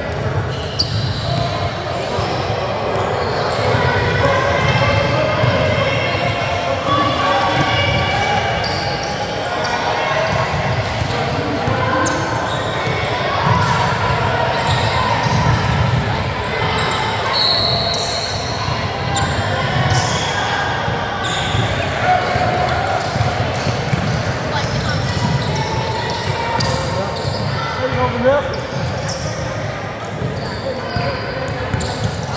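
Basketball dribbled and bouncing on a hardwood gym floor during play, mixed with shouting voices from players and spectators, all echoing in a large gymnasium.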